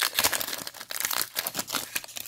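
Foil trading-card pack wrapper crinkling as it is pulled open by hand: a quick, irregular run of crackles.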